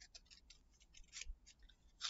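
Faint, scattered clicks and light rattling of wooden craft sticks knocking together as they are picked up and handled.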